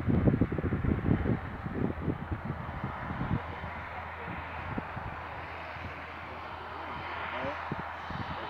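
Irregular low buffeting on the microphone, loudest in the first three seconds or so, then settling to a steady outdoor background.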